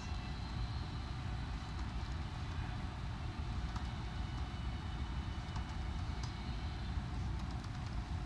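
Steady low background rumble with a few faint clicks.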